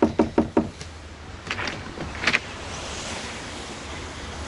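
Four quick knocks on a door in the first half-second, followed by a few fainter clicks and rustles over a steady hiss.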